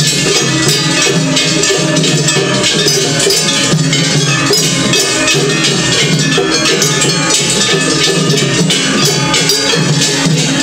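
Gion-bayashi festival music from a float band: loud, dense, unbroken clanging of brass hand gongs (kane) over shime-daiko drums.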